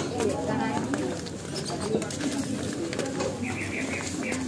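Traditional market ambience: many people talking over one another in a steady crowd murmur, with bird calls among it and a quick run of high chirps near the end.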